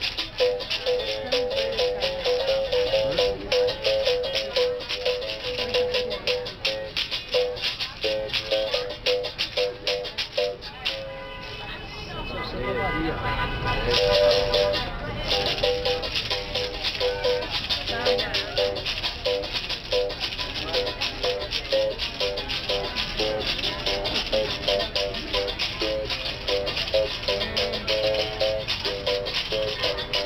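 Capoeira berimbau played with a stick and caxixi basket rattle: the struck wire rings out alternating notes in a steady toque rhythm, with the rattle shaking on every stroke. The playing breaks off for about three seconds near the middle, then picks up again.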